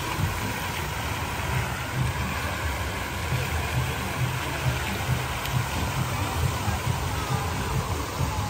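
Plaza fountain's water jets running, a steady rush of falling and splashing water, with a low rumble underneath.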